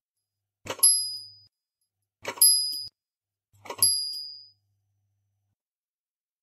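Small bell on a motor-driven shepherd figurine, rung three times about a second and a half apart as the figure pulls its rope. Each stroke starts with a brief rattle, then a bright ding that dies away within about half a second. A faint low hum sounds under each ring.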